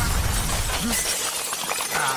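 Cartoon crash-and-shatter sound effect: a dense clatter of many small cracks and clinks, like things breaking apart. A low rumble under it drops away about halfway through while the crackle continues.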